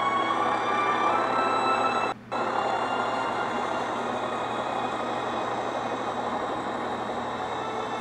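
Steady engine drone of an animated airship in a cartoon soundtrack, cutting out briefly about two seconds in.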